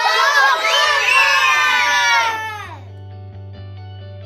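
A group of young children shouting and cheering together, with many high voices at once, fading out after about two and a half seconds. Background music with steady held notes comes in under the cheer and carries on alone.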